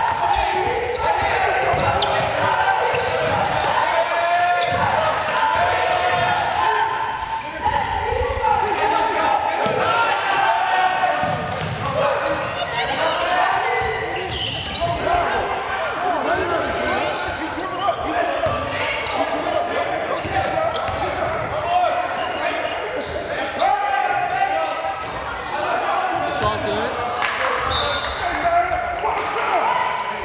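A basketball bouncing repeatedly on a hardwood gym floor during live play, under shouting voices from players and spectators, all echoing in a large gymnasium.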